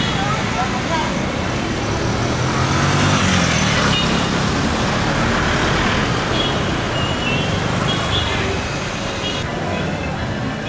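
Street traffic at a city intersection: a motorcycle engine passes, its low rumble loudest about two to four seconds in, over a steady hum of traffic.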